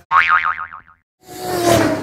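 Cartoon 'boing' sound effect for a logo animation: a springy tone that wobbles up and down several times. After a short silence, a whoosh swells up in the second half.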